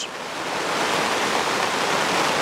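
Steady, even rushing background noise with no distinct strokes or knocks.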